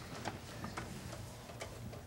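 Faint light clicks and ticks at uneven intervals over a low, steady room hum.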